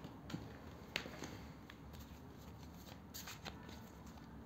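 Tarot cards being picked up off a cloth and gathered into a stack: faint rustling with a few short taps, the sharpest about a second in.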